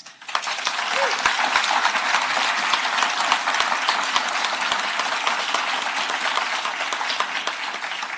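Audience applauding: a room full of hands clapping, starting just after the beginning and thinning out toward the end.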